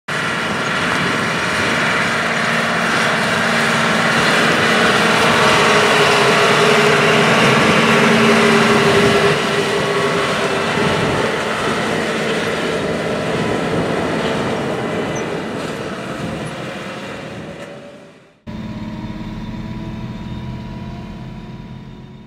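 John Deere R4045 self-propelled sprayer driving past across a field, its engine and drivetrain running loud and steady. The sound builds toward the middle and then fades away. After a sudden cut about 18 s in, the sprayer is heard running from the cab as a steadier, lower drone.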